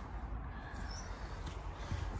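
Low, steady outdoor background noise with a few faint, short bird chirps.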